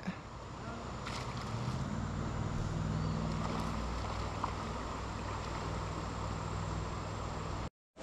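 Steady creek-water and wind noise with a low, even hum that sets in about two seconds in. The sound cuts out abruptly just before the end.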